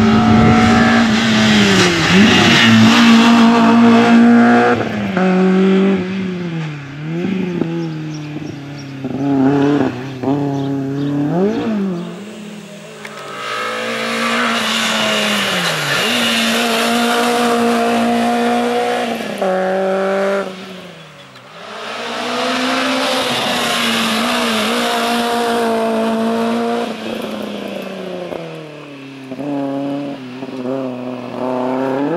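Peugeot 106 hatchback race car's engine revved hard, its pitch climbing through each gear and dropping at shifts and braking. Between about six and twelve seconds in come quick rev blips on downshifts as it works through the cones, then two long hard pulls with a short drop in between.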